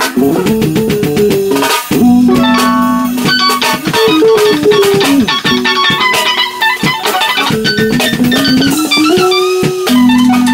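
Rock band playing: an electric guitar lead with bending notes over bass guitar and a drum kit.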